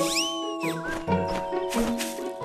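Children's cartoon background music with held notes, opened by a cartoon sound effect whose pitch sweeps up and falls back down over about half a second.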